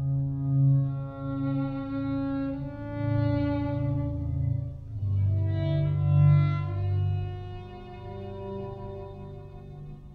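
Solo violin playing long held notes, changing pitch every two or three seconds, with live electronic tones from a Max/MSP patch that pitch-tracks the violin and plays back its overtones in real time.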